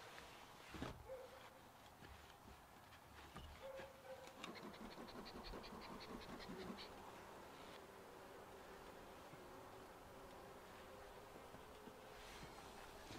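Faint hum of honeybees from an open hive, with a quick run of soft, evenly spaced pulses about halfway through.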